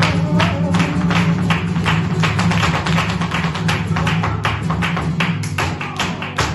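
Flamenco music: a sustained low guitar-like chord under a fast run of sharp percussive strokes, about five to six a second.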